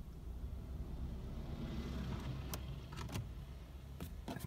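A low car hum that swells towards the middle and fades again, with a few sharp clicks in the last second and a half.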